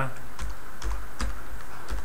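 Computer keyboard being typed on: a handful of separate, unevenly spaced keystrokes as a short word is entered.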